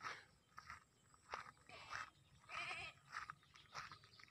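Goats bleating faintly, several short calls with a wavering one about two and a half seconds in: penned goats that aren't happy, calling to be let out.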